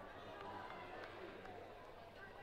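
Faint, distant, unintelligible voices calling and chatting in open air, with a few light clicks.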